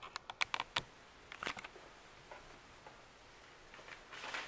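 A run of light clicks and taps from a deck of playing cards being picked up and handled on a tabletop, most of them in the first second, with a few more about a second and a half in.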